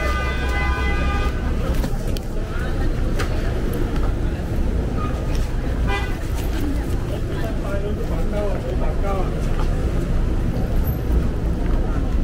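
A car horn sounds one steady blast of just over a second, over the rumble of street traffic and the voices of passers-by.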